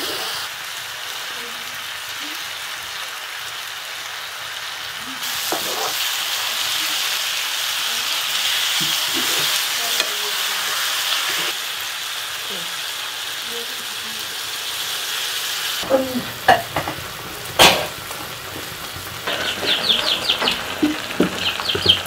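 Food frying in a cooking pan: a steady sizzle that grows louder for a while mid-way, then eases. Near the end a few knocks and one sharp clack, like utensils against the pan, break it off.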